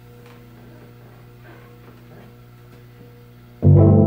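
Quiet steady electrical hum from the keyboard rig's amplification with a few faint clicks, then a loud sustained organ-toned chord over bass starts abruptly near the end as the jam begins.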